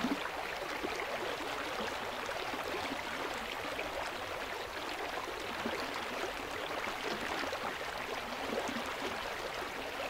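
A stream flowing steadily, water running with a continuous rushing sound.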